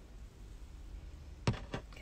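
Faint low hum, then two short sharp clicks about one and a half seconds in.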